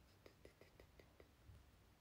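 Near silence: room tone, with a quick run of about seven faint clicks in the first second or so.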